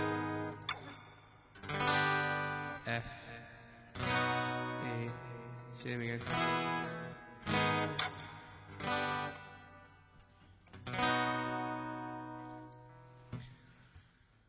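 Takamine steel-string acoustic guitar strummed in a slow chord sequence, with a new chord struck every second or two. The last chord is left to ring and fades away near the end.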